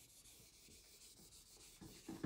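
Very faint rubbing of a cloth duster wiping a whiteboard, in short strokes, a little louder near the end.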